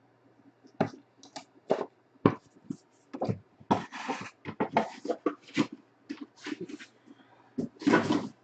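Trading cards in plastic holders being handled: irregular clicks, taps and rustles, with a longer rustle about four seconds in.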